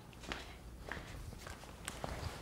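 A few faint footsteps, soft knocks about half a second apart, over low room tone.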